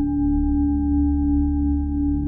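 A struck singing bowl ringing on with a steady, slowly fading tone over a low drone.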